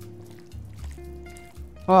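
Soft background music with a few held notes, and one short spoken word near the end.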